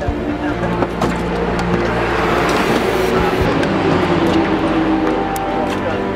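Race car engines running in the pit lane, with a few sharp knocks near the start and voices around.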